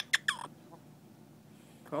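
Amazon parrot giving two or three short, sharp calls in quick succession at the start, the last one sliding down in pitch.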